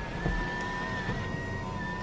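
Electric motor of a Lexus RX panoramic sunroof running as the roof opens: a steady whine with two held tones over a low hum.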